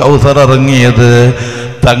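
A man singing a Malayalam Islamic devotional song in a chanting style, drawing out wavering held notes; the voice breaks off briefly near the end.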